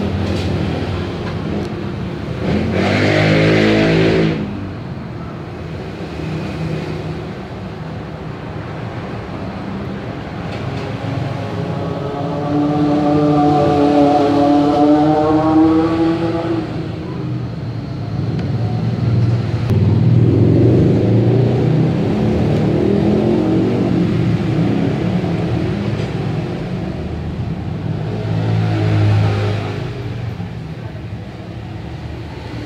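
Motor vehicle engines passing in the background over a steady low rumble. One engine rises slowly in pitch for about five seconds in the middle, and others swell briefly early on and near the end.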